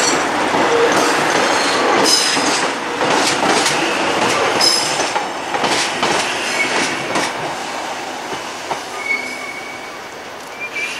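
Korail Bundang Line electric multiple unit rolling past close by, with brief high squeals about two and five seconds in. The noise fades over the last few seconds as the last car pulls away.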